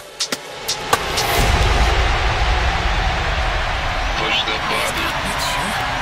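Produced radio-show jingle: a few sharp clicks, then a swelling whoosh of noise over a deep rumble that holds, with snatches of processed voice near the end.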